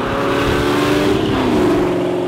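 Chevrolet small-block V8 in a mid-engine 1965 Corvair Crown driving by at speed, its exhaust note dropping in pitch about a second and a half in, with road and wind noise under it.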